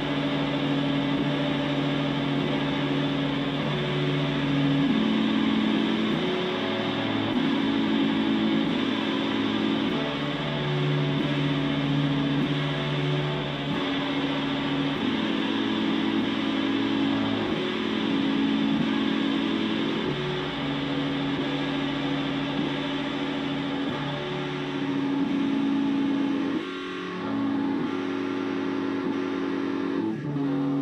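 Electric guitars played through effects pedals, holding loud, sustained droning chords that shift about every five seconds, with a brief dip in level near the end.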